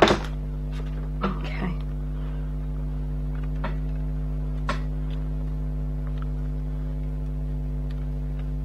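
A steady low electrical-sounding hum, with a sharp tap at the start and a few faint light taps as a handmade card is set down on a cutting mat and pressed flat by hand.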